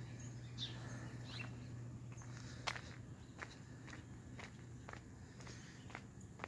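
Faint footsteps outdoors: short, sharp ticks and taps at irregular intervals about a second apart, over a low steady hum that fades after about three seconds.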